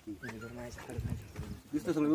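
Men's voices talking quietly, the words not clear.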